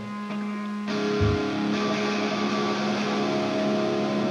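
Amplified electric guitar on stage: a chord strummed about a second in and left ringing over a steady low hum, with a brief low thump just after the strum.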